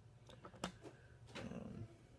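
A few faint clicks and a low rustle of hard plastic graded-card slabs being handled and picked up.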